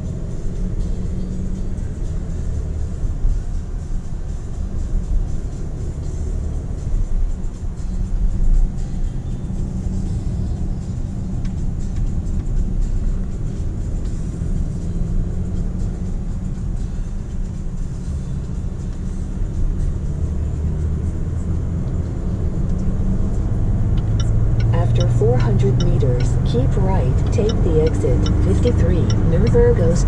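Cabin noise of a Range Rover Sport 3.0 SDV6 diesel V6 on the move: a steady low engine and road rumble that grows louder as the car picks up speed onto the motorway in the last several seconds. Voices sound over it in the last few seconds.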